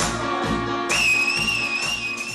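A loud, high two-finger whistle, one long steady note that starts about a second in and is held, over dance music with a regular beat.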